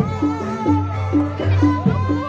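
Jaranan-style gamelan music accompanying a bantengan performance: a steady repeating pattern of low pitched struck tones about twice a second, with a wavering melody line above.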